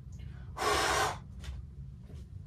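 A man's heavy, breathy sigh into the microphone, a single exhale of about half a second just after the start.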